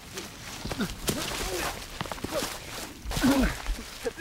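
Lightsaber duel: several short swooping hums of swung lightsabers and sharp clash hits, mixed with brief grunts from the fighters.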